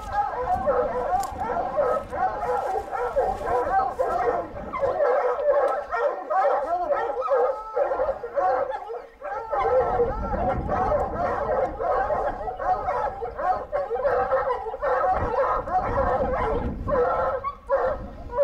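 A pack of lion hounds baying and bawling without a break, many voices overlapping, as they hold a mountain lion treed.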